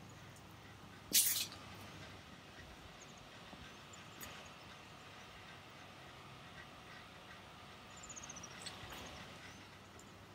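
Quiet outdoor garden ambience with a brief rustling hiss about a second in. Near the end comes a faint, very high descending run of chirps from a small bird.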